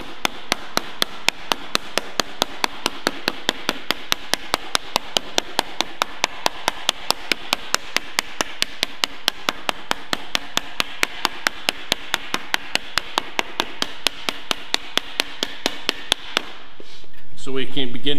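A full-radius hardwood slapper slapping a sheet-metal panel in a steady, rapid rhythm of about four to five strikes a second, raising a crown in the panel. The slapping stops about a second and a half before the end.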